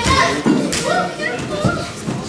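Wrestling crowd in a hall calling and shouting, many children's voices among them, with a brief sharp knock about half a second in.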